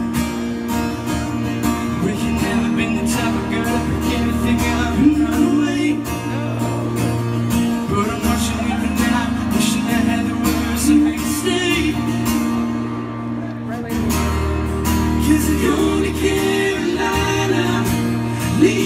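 A live pop band playing through a hall PA: strummed acoustic guitars over bass and a steady beat, with singing. Past the middle the high percussion drops out for a moment, then the full band comes back in.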